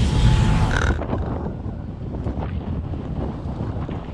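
Steady low rumble of a car driving, road and engine noise inside the cabin, turning quieter and duller about a second in.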